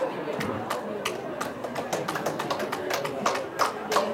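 Indistinct chatter of several people's voices, overlaid by a run of irregular sharp taps or claps.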